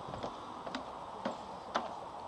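Footsteps climbing open wooden stair treads: sharp knocks about two a second.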